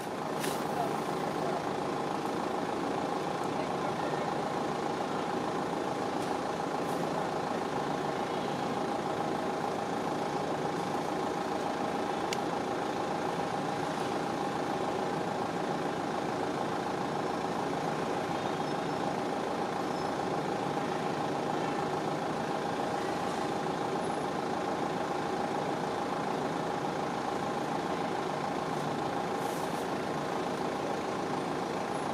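A steady mechanical drone with a held hum, unchanging throughout.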